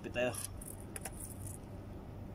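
A brief vocal sound near the start, then light metallic jingling and rattling of a spinning rod and reel being picked up off rocks, with a sharp click about a second in.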